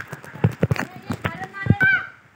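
Quick footsteps climbing stone steps, a string of sharp knocks a few per second, with a short burst of a voice near the end.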